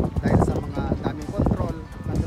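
People talking, with frequent sharp clicks or knocks mixed in.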